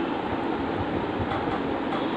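Steady background noise with a low rumble, with one faint click about a second and a half in.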